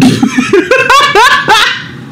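A man laughing hard in a string of short voiced bursts that die away near the end.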